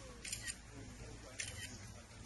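Camera shutter clicking in two quick bursts of several clicks each, about a second apart, over faint murmuring voices.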